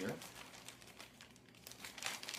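Faint, irregular crinkling of a small plastic bag being handled and opened to take out the parts inside.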